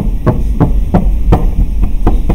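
A run of short, dull knocks or taps, about three a second and unevenly spaced, over a steady low hum.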